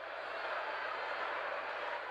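Football stadium crowd noise, a steady wash of many voices that grows a little louder in the first half-second.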